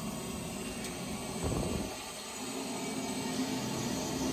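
Telescopic dump-trailer hoist lowering the raised bed under gravity, with a steady hiss of hydraulic fluid returning through the lowering valve. A faint hum joins it past the halfway point.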